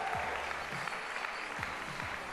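Audience applauding, easing off slightly toward the end.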